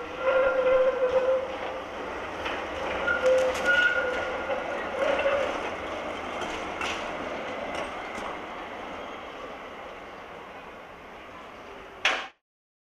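Tram running on street rails with short spells of pitched wheel squeal in the first few seconds and a few clicks over the rail joints. It grows fainter toward the end as it moves away.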